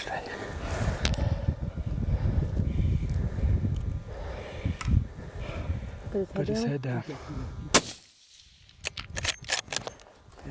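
A single hunting-rifle shot about three-quarters of the way in, sharp and the loudest sound. It comes after a low rumble and a brief low voice, and is followed by a moment of silence and then a quick run of sharp clicks.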